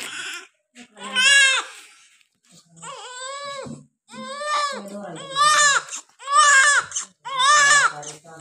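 Newborn baby crying just after birth: a string of short wails, about one a second, each rising and then falling in pitch.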